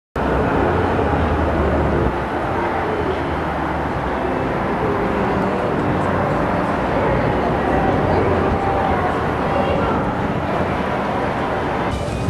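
Steady outdoor ambience: a low, even rumble like distant traffic, with faint indistinct voices in the background.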